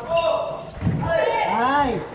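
A celluloid-type table tennis ball clicking off paddles and the table in a large hall. A voice calls out in a drawn-out rising and falling cry near the end, as the rally stops.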